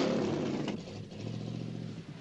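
Car engine running just after being started, its revs dropping back to a steady idle.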